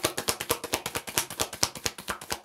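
A deck of tarot cards being shuffled overhand, the cards slapping against one another in a quick run of clicks, about ten a second.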